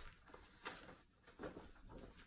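Near silence with a few faint, brief rustles of denim jeans being unfolded and handled.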